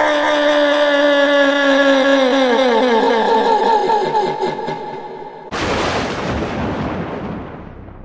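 Transition sound effects between stories: a long, wavering, howl-like tone that slides down in pitch and fades, then about five and a half seconds in a sudden boom that dies away over about two seconds.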